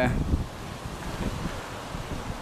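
Wind buffeting the microphone: an uneven low rumble with a faint hiss.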